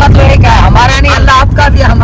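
Men's voices talking back and forth inside a car cabin, over the steady low rumble of the moving car's engine and road noise.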